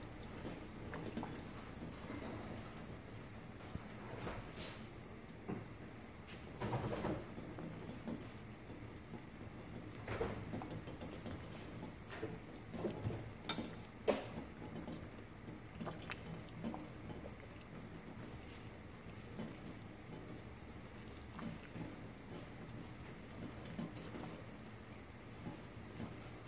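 Water at a rolling boil in a small stainless steel saucepan, with two eggs in it: a faint, steady bubbling with scattered pops. Two sharp ticks stand out about halfway through.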